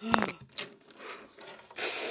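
A hand rubbing and brushing against the recording phone. There is a short knock at the start, faint scratching after it, and a loud scraping rustle near the end.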